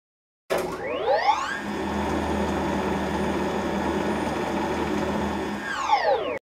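Intro sound effect: a whirring tone that sweeps up in pitch about half a second in, holds steady for about four seconds, then winds down near the end.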